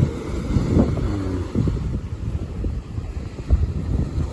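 Wind buffeting the phone's microphone in uneven gusts, with surf breaking on the beach behind it.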